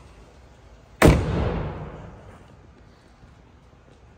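The hood of a 1985 Chevrolet Camaro Z28 slammed shut: one loud bang about a second in, echoing and dying away over a second or so.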